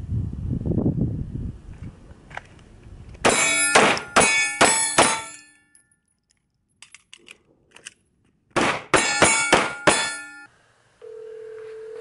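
Handgun firing two quick strings of about five shots each, each shot ringing on with a metallic tone, separated by a pause of about three seconds with a few small clicks of a magazine change. Near the end a steady telephone ringing tone starts.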